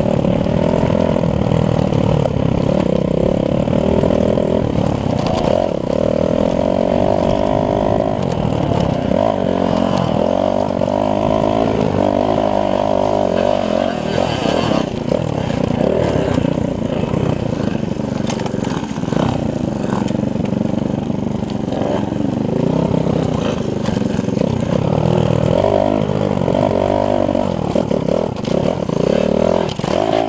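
Small motorcycle engine being ridden hard along a rough trail, its pitch rising and falling continuously as the rider works the throttle.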